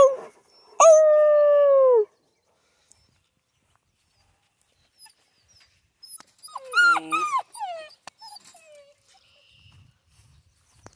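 Central Asian shepherd dogs whining and howling. A long, steady howl about a second in ends with a drop in pitch. After a pause, a burst of shorter sliding whines and yelps comes about six seconds in and trails off near the end.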